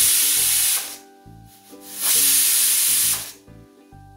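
Aluminium stovetop pressure cooker whistling on low flame: its weight valve lets out two loud hisses of steam, each just over a second long. One comes at the start and the other about two seconds in. These whistles are counted to time the pressure-cooking of mutton.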